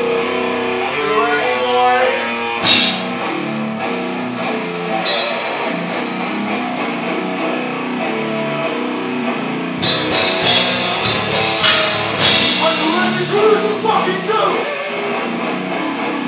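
Live heavy hardcore band playing: electric guitar, bass guitar and drum kit. Cymbal crashes land about three seconds in, again at five seconds, and several times in the second half.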